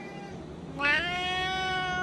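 Siamese cat meowing for food: a short faint call at the start, then about a second in a long, loud meow that rises in pitch and then holds steady, sounding like "now".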